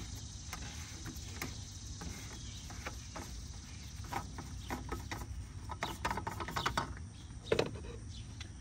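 Plastic screw cap of a Porsche Macan's coolant expansion tank being twisted by hand, giving scattered light clicks and ratcheting, with one louder click near the end, over a low steady outdoor background.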